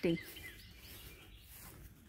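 Quiet outdoor background with faint bird chirps.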